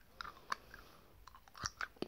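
Mouth sounds of a boy chewing and sucking on sour candy: about half a dozen short, faint wet clicks and smacks of the lips and tongue.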